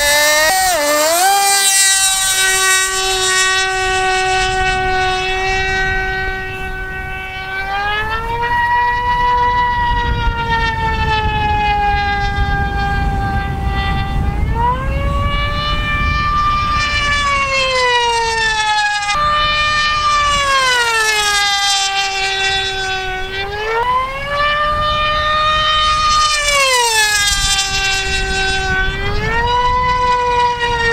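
Radio-controlled pylon racing plane at full throttle: a loud, high-pitched whine with many overtones. It is blipped up and down in the first two seconds, then holds a steady pitch that swings higher and lower every few seconds as the plane laps the course at close to 200 mph.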